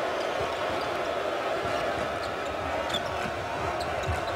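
Arena crowd noise with a basketball being dribbled on a hardwood court, and a few short squeaks of sneakers on the floor.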